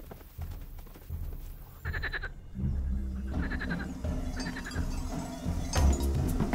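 Cartoon soundtrack: soft, quick footfalls of a running animated character, then a low background music bed comes in about halfway, with three short bleat-like calls.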